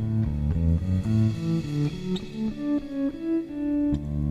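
Background music: a melody of short plucked notes following one another at a moderate pace.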